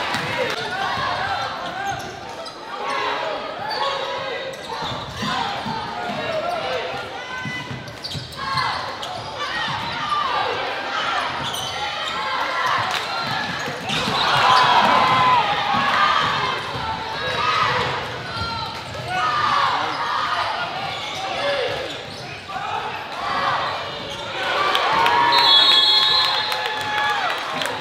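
Sounds of an indoor basketball game in a gym: a ball bouncing on the court, with crowd and players' voices calling throughout.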